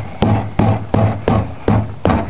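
Hand knocking repeatedly on the ice-coated trunk lid of a car, a quick, even run of about three knocks a second, each with a short low ring from the metal panel.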